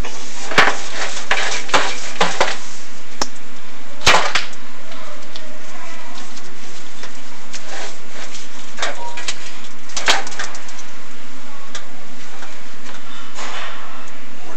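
Sharp knocks and clicks from the chimney inspection camera and its cable being worked down a clay-lined flue, several in the first few seconds, one loud knock about four seconds in and another about ten seconds in, over a steady hiss.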